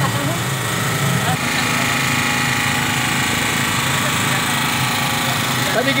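A small engine running steadily, with a higher whine joining in about a second and a half in.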